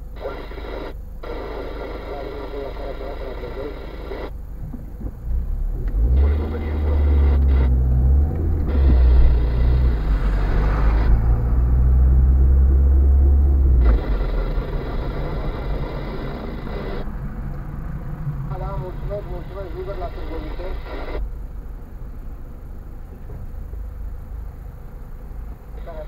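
Car engine and road rumble heard inside the cabin while driving in city traffic. The low rumble grows loud from about six seconds in, as the car pulls away, and eases off after about eight seconds.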